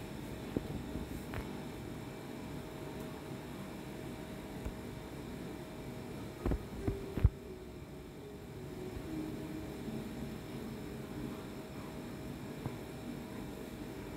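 Steady low hum and hiss of room noise with a faint steady tone. A few short knocks come about six and a half to seven seconds in, the last one the loudest.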